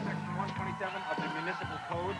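Rock band playing live, electric instruments and drums, with voices shouting and yelling over the music.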